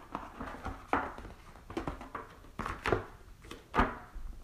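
Hands handling an open cardboard box and pulling out a sheet of paper: scattered rustles, scrapes and a few short knocks, with a sharper knock near the end.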